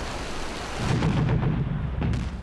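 Steady hiss of heavy rain, joined a little under a second in by a deep low rumble.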